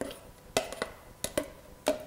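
A metal spoon knocking and scraping against a plastic measuring cup and the rim of a stock pot as thick cream-style corn is scraped out: about six short, sharp clicks spread over two seconds.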